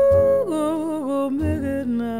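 Slow jazz ballad: a female singer holds a long sung vowel, then carries it through a wordless phrase that steps down in pitch toward the end. Upright bass plays soft low notes underneath, with piano, guitar and drums accompanying.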